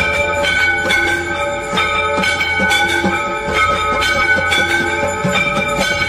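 Hindu temple aarti bells and metal percussion ringing continuously, struck over and over in a steady quick rhythm, their tones blending into a sustained ring.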